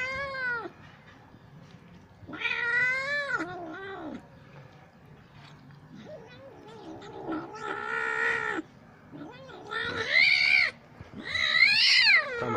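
Kitten giving long, drawn-out wailing meows, about four in a row with short gaps between, over a shared plate of food. Typical of a cat that does not want to share its food with the others.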